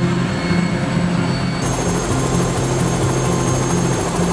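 Helicopter engine and rotor noise heard inside the cabin: a loud, steady rush with a thin high whine. About a second and a half in, the sound shifts, and a higher whine and a fast pulsing at the top come in.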